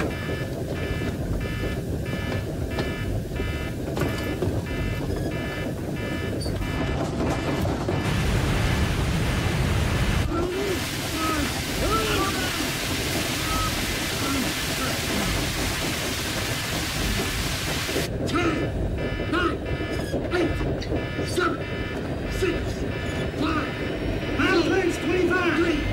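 A submarine alarm beeps about twice a second. In the middle it is buried under a loud rush of spraying seawater flooding the compartment, and the beeping comes back near the end.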